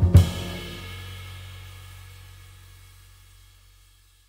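Jazz band's final hit ending the tune: a sharp drum and cymbal accent just after the start, the loudest moment, then the cymbal and a low held note ring on and fade out.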